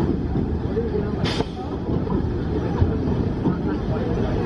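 Whizzer, a Schwarzkopf Speed Racer steel coaster: its train rolling slowly along the track with a steady rumble of wheels, and a brief hiss about a second in. Riders' voices are mixed in.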